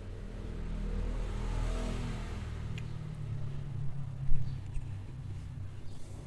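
A vehicle driving along a street, with steady low engine and road rumble that swells and fades over the first two seconds. A short sharp knock comes a little after four seconds.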